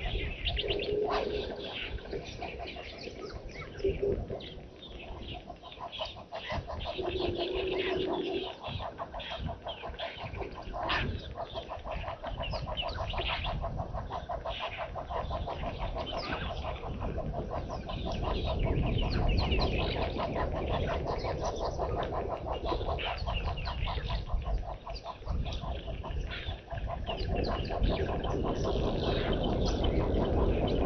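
Wild birds chirping and calling, with a few low, steady hooting notes in the first eight seconds, over a low background rumble that grows louder in the second half.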